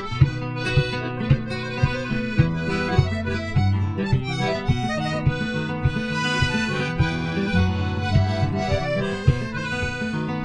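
Piano accordion playing a sustained melody over an acoustic guitar strumming a steady rhythm, about two strums a second. It is an instrumental break in a sea-shanty style song, with no singing.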